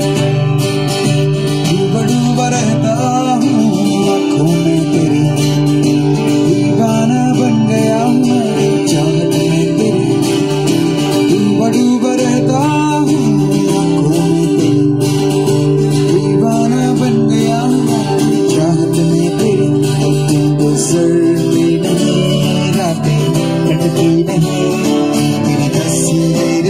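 Acoustic guitars played live with a singer: steady strummed chords under a lead vocal line.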